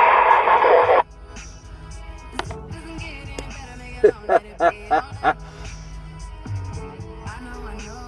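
CB radio speaker: a radio voice transmission that cuts off abruptly about a second in, followed by quieter music with a few short vocal sounds coming over the channel.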